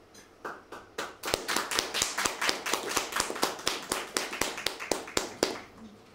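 Audience applauding: a few claps about half a second in, then a quick, steady run of hand claps from about a second in that stops just before the end.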